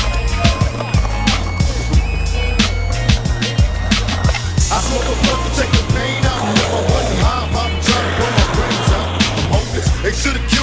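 A skateboard rolling and clacking on concrete, mixed with a music track with a steady beat.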